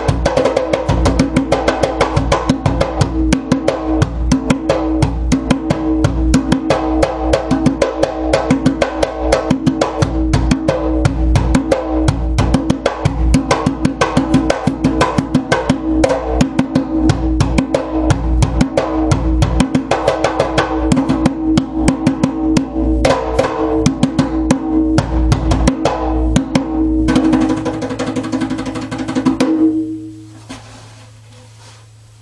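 Accompaniment djembe played by hand in a fast, continuous rhythm. Its head is not tightly tensioned, which gives a full, resonant sound with a steady ringing note under the strokes. It ends in a quicker flurry of strokes that stops at the very end.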